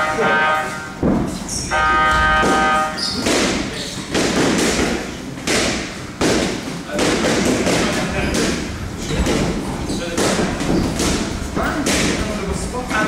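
Boxing gloves landing punches during sparring: a run of sharp thuds and slaps at irregular intervals from about three seconds in. Over the first three seconds a steady held tone sounds, broken briefly about a second in.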